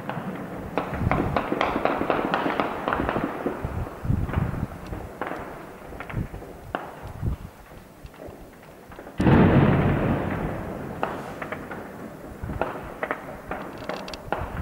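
Scattered sharp cracks and pops of gunfire, then about nine seconds in a sudden heavy explosion from shelling that rolls and echoes away over a few seconds.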